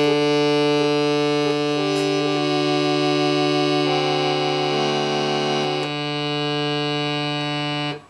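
Prototype fan organ playing a folk tune: a steady low drone on D, held by foot-pulled strings on the keys, under a hand-played melody of sustained reedy notes. More notes sound together from about four seconds in, and the whole sound cuts off right at the end.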